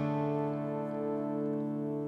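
Background score music holding one steady chord.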